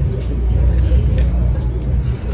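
Indistinct talking from people close by over a steady low rumble, with a couple of light clicks.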